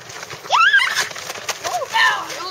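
A child's high-pitched shout that rises sharply in pitch, about half a second long, with a shorter, fainter call near the end.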